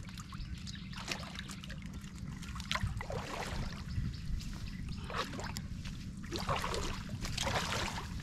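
Shallow pond water splashing and trickling in irregular bursts as a slatted cage fish trap is lifted out and a person wades through the water, with the heaviest splashing near the end.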